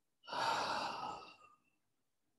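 A woman's audible sigh: one breathy out-breath through the mouth that starts a quarter of a second in and tapers off over about a second. It is a deliberate relaxation exhale after a deep belly breath.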